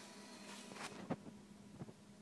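A few faint clicks and knocks, the loudest about a second in, over a low steady hum: handling noise as the camera is moved.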